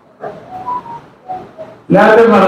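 Faint voices in several short broken bursts, then loud male speech into a microphone starting just at the end.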